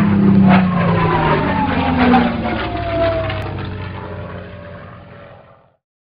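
Aircraft engine drone passing by, its pitch falling as it slowly fades out, like a fly-by sound effect over an intro; it dies away about five and a half seconds in.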